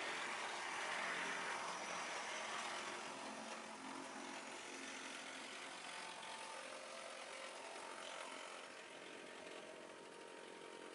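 OO gauge model Class 156 multiple unit running along the track: the small electric motor whirring and the wheels rolling on the rails, a steady sound that grows gradually fainter.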